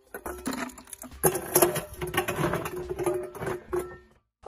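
Chunks of ice clinking and knocking against metal as they are scooped out of a galvanized metal bin with a metal saucepan and tipped into an enamel bucket: an irregular string of clinks, knocks and scrapes.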